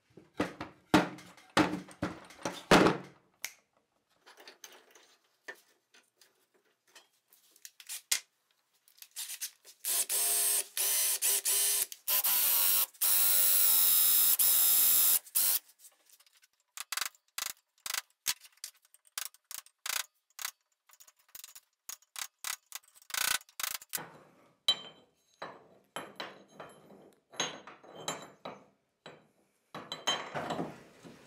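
Workshop handling sounds: a few knocks of a wooden bar being moved on a workbench, then a loud power tool runs for about six seconds in the middle. After it comes a long run of small metal clicks and taps as a rusty axe head is worked in a steel bench vise.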